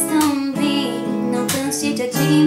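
A woman singing with a strummed acoustic guitar.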